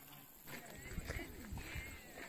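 Faint, indistinct voices of people talking, with a few light knocks like footsteps.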